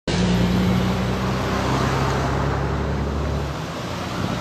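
Traffic stopped in a jam, with a car engine idling close by: a steady low hum over broad road noise. The lowest part of the hum drops away near the end.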